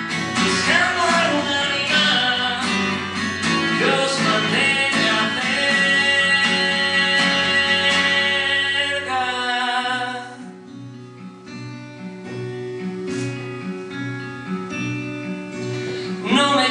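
Man singing to his own strummed acoustic guitar, the voice holding a long note before it stops about ten seconds in; the guitar then carries on alone, more quietly, in a steady strumming rhythm.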